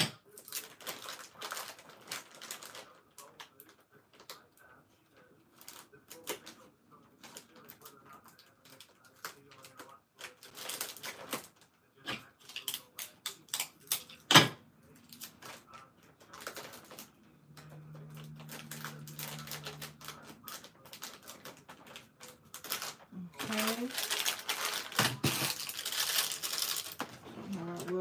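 Packaged snacks and toys being handled and rearranged in a plastic gift basket: crinkling wrappers and plastic packaging with scattered clicks and knocks, one sharp knock about halfway through and a busier stretch of crinkling near the end.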